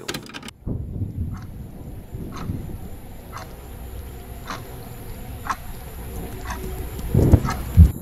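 Sound-designed ambience: a watch ticking about once a second over a steady low rumble and a high hiss, ending in two loud low thumps.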